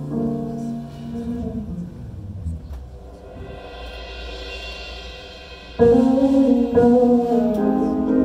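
A high school jazz ensemble playing live: held chords fade to a quiet passage with a low held note and a high shimmer, then the full band comes back in loudly about six seconds in.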